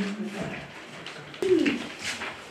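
A person's wordless voiced sounds: a short hum at the start, then a louder vocal sound falling in pitch about one and a half seconds in.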